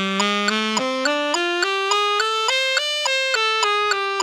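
Tenor saxophone playing an E minor blues scale in even, evenly tongued notes, climbing to the top of the scale and turning back down, over a metronome clicking about three times a second.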